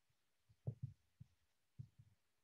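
A few faint, soft taps of a whiteboard marker against the board as letters are written, otherwise near silence.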